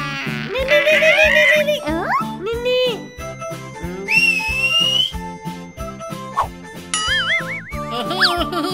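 Cartoon soundtrack: bouncy children's background music with a steady beat, overlaid with squeaky cartoon sound effects, a series of sliding, wobbling whistle-like tones, the longest a rising tone about four seconds in.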